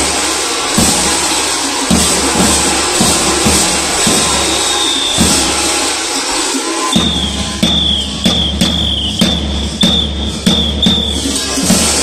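Kukeri costume bells jangling and clanging as the dancers move, with a tapan drum beating steadily. From about halfway through, a short sharp high squeal repeats about twice a second over the bells.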